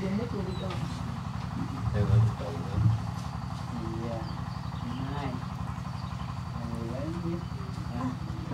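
Soft, murmured voices from the group, not clear enough to make out, over a steady low motor rumble. Two short low thumps come about two and three seconds in.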